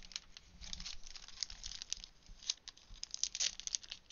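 Plastic wrapper of a paper pad crinkling as it is handled and turned over, in irregular rustles and small crackles.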